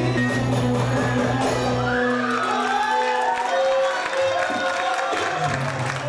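Music at a wedding party, with guests cheering and whooping. The bass drops out about two seconds in, leaving higher pitched lines over the crowd noise.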